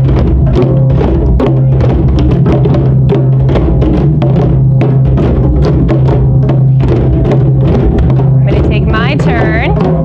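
A classroom ensemble of djembes played by hand together, many overlapping strikes over a steady low drum tone. Near the end a high voice rises and falls briefly over the drumming.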